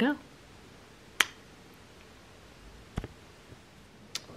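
A single sharp click about a second in, then a softer, duller knock near three seconds, over quiet room tone.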